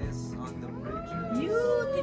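Music playing while several voices call out in long, overlapping rising and falling tones, like drawn-out 'ooh' cheers.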